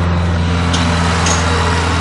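A farm tractor towing a trailed implement passes close by on the road, its engine a steady low drone as the noise builds.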